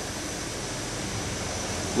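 Steady, even rushing background noise with a faint high steady tone and no distinct events.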